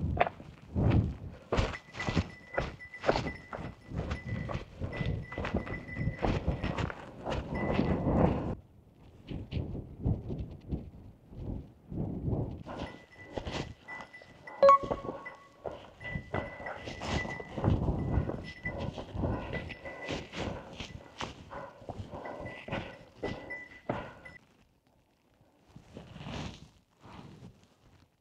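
Hiking boot footsteps on a rocky mountain trail: an uneven run of steps on stone and gravel, with a short pause about nine seconds in, then stopping a few seconds before the end. A faint, thin high tone rings along with the steps for much of the time.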